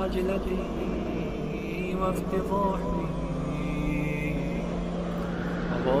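A steady low hum with faint, indistinct voices under it.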